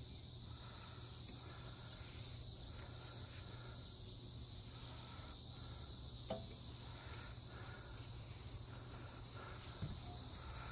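Steady, high insect chorus in the background, with a faint chirp repeating about once a second and a low steady hum beneath. A single sharp click comes about six seconds in.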